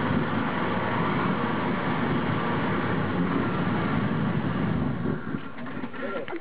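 Classic Range Rover's engine running under load on a steep dirt track, easing off about five seconds in.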